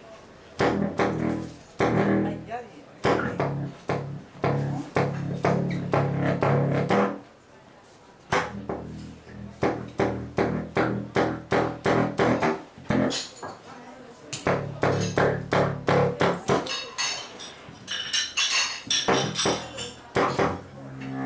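Large silver low-register saxophone played solo in free improvisation. It plays runs of short, sharply attacked low notes with a few longer held low notes. Near the end the sound turns brighter and harsher.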